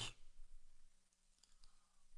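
Near silence, with a few faint clicks in the first second.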